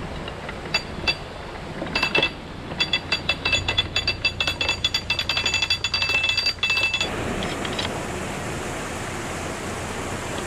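Canal lock paddle gear wound with a windlass: the ratchet pawl clicks against the metal gear with a bright, ringing clink, a few clicks at first and then rapid clicking that stops after about seven seconds. A steady rushing noise follows.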